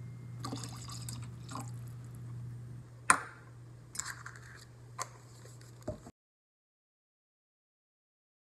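Pineapple juice poured from a shot glass into a plastic cocktail shaker, followed by a few sharp knocks of glass and bottle set down on the counter, the loudest about three seconds in. The sound cuts off to silence about six seconds in.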